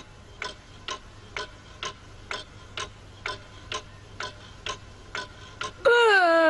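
Pendulum wall clock ticking steadily, about two ticks a second. At the very end a loud cartoon voice cry cuts in.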